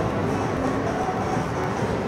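Steady din of a pachinko parlor: many pachislot machines' electronic music and effects blending into one continuous wash of sound.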